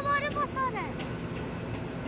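Crane's engine running steadily with a low hum. A voice is heard briefly at the start.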